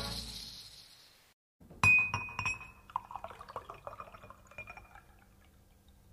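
A rock band's last chord dies away into a brief dead silence; then a sharp glass clink rings out, followed by a run of small glassy clinks and rattles that fade away.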